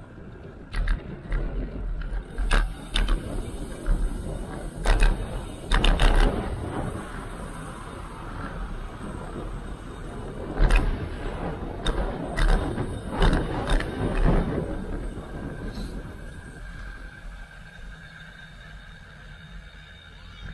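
Bicycle ride heard from a handlebar-mounted camera: road rumble and wind buffeting the microphone, with irregular knocks and rattles from bumps in the road. It turns quieter and smoother near the end.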